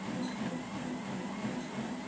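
Steady background hum and hiss of room noise, with no distinct events.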